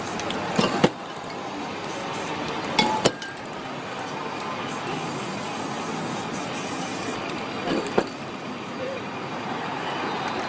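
Aerosol spray-paint can spraying in a steady hiss, broken by a few sharp clicks.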